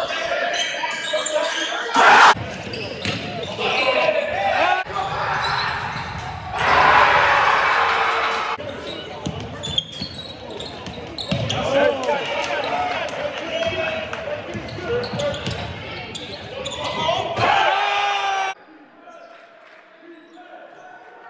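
Live basketball game sound in a gymnasium: a ball dribbling on the hardwood amid crowd voices and shouts, with a sharp bang about two seconds in and a louder swell of crowd noise about seven seconds in. The sound changes abruptly several times where the footage cuts between games.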